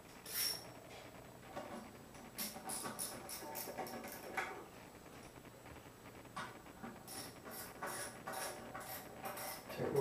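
Light metallic clicking in two runs of a few clicks a second, as the nuts are put on and tightened onto the toilet's floor anchor bolts.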